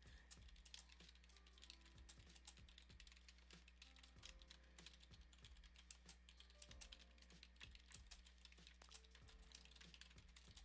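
Faint typing on a computer keyboard: a quick, irregular run of key clicks, over a low steady hum.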